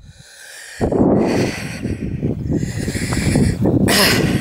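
Wind buffeting the camera's microphone out on open moorland: a rough, rumbling rush of noise that cuts in abruptly about a second in, after a moment of near silence.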